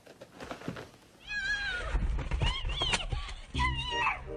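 A domestic cat meowing several times over background music, the calls gliding and bending in pitch.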